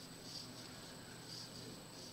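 Faint soft rustling and light scratching of a metal crochet hook pulling wool yarn through double crochet stitches, a few quiet strokes about a second apart.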